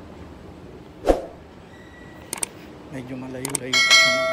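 Train ride with a low steady rumble, a dull thump about a second in and a few sharp clicks, then near the end a bright chime of several ringing tones that rings on past the end: the train's signal chime.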